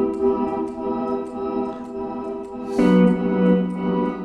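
Electric guitar chord frozen by a freeze pedal into a steady, organ-like sustained drone; about three quarters of the way through, a new chord with a lower bass note is frozen in its place. The drone is the start of what he calls a fake side-chain effect.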